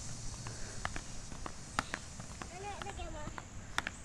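Small inline skates clacking on asphalt as a young child takes short stepping strides: a string of irregular sharp clicks.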